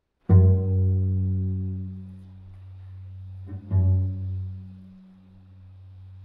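Solo cello playing two low notes on about the same pitch with the bow, about three seconds apart, each starting strongly and then fading.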